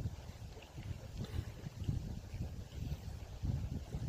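Wind buffeting the camera's microphone, a low, uneven rumble that rises and falls in gusts.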